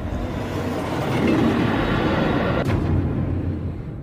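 A loud rumbling noise swells up, holds, and fades away, with a sharp break a little over halfway through.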